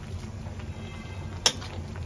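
A plastic cooking spoon knocks once against a stainless steel wok of shrimp broth about one and a half seconds in, over a low steady background hum.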